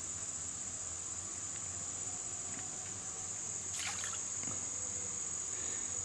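Steady high-pitched chorus of insects, with one brief faint rustle about four seconds in.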